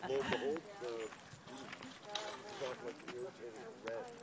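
Indistinct conversation between people in the background, too faint for any words to be made out.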